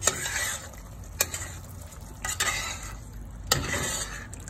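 A metal spoon stirring a thick pork and green chili stew in a stainless steel pot, scraping around the pan in strokes about a second apart with clicks where it knocks the sides, over a low sizzle of the dish cooking.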